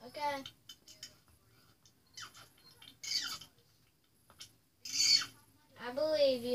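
Four short, high-pitched squeaky voice sounds with sliding pitch, separated by quiet: one at the start, one about three seconds in, one about five seconds in and one at the very end.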